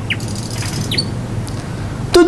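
Short bird chirps: the end of a quick series of falling chirps at the start, then a single chirp about halfway through, over a faint steady hum.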